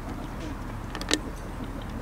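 A single sharp click about a second in, over steady outdoor background noise.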